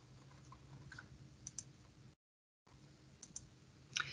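Near silence with a faint low hum and a few faint clicks in two quick pairs, typical of a computer mouse clicking to advance a presentation slide.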